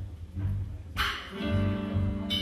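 Live jazz band playing a calypso tune: bass and drums keep a steady pulse, a cymbal crash rings out about a second in, and a saxophone then holds a long note.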